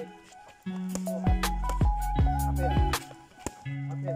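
Background music: an electronic beat with deep bass kicks that drop in pitch, about two a second, under a held synth melody. The beat drops out briefly at the start and again about three seconds in.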